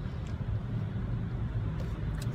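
Steady low rumble of a car heard from inside its cabin, engine and road noise with no other event standing out.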